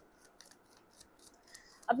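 A deck of tarot cards being shuffled in the hands: faint sliding rasps of cards against each other with a few light clicks.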